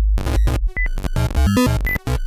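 Harsh, glitchy electronic music played in step with a laser show. Heavy bass and buzzing tones chop abruptly from one block to the next several times a second, broken by short high beeps.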